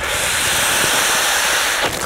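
Air being sucked by mouth out of a polythene freezer bag of apples through its gathered neck: a steady hiss for nearly two seconds that stops just before the end.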